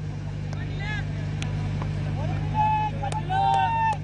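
A steady low engine-like hum, with distant raised voices calling out on the field: one short call about a second in and a louder run of high, drawn-out shouts over the last second and a half.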